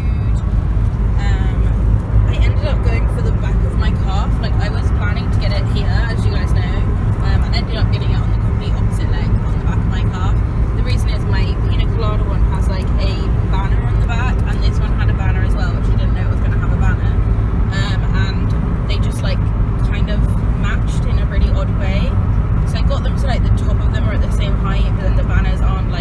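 Steady low rumble of a car being driven, heard from inside the cabin: engine and road noise, with people's voices over it.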